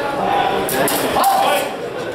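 Quick sharp clicks of rapier and dagger blades meeting in a fencing exchange, clustered about three-quarters of a second in, over voices in a large hall.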